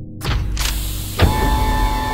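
Sliding blast-door sound effect: a rush of mechanical noise as the doors open, with a sharp knock about a second in, over steady music tones.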